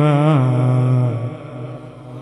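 Male Quran reciter (qari) chanting tilawat in melodic style through a microphone, holding a long wavering note that steps down to a lower pitch, then breaks off about a second in and fades away as the phrase ends.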